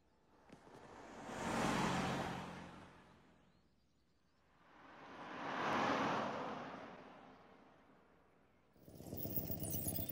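Two vehicles drive past one after the other, each swelling and fading over about three seconds, the second a pickup truck. Near the end a small car's buzzing engine comes close.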